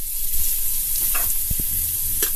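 Chopped onion sizzling steadily in hot oil in a pressure cooker. From about halfway through, a metal spoon stirs it, knocking and scraping against the pot a few times.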